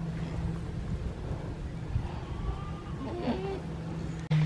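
Low, rumbling noise of wind buffeting the microphone outdoors, with a faint short animal-like call about three seconds in.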